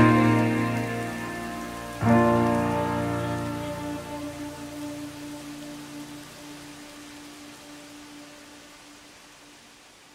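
Background music ending: a final chord comes in about two seconds in and slowly fades out.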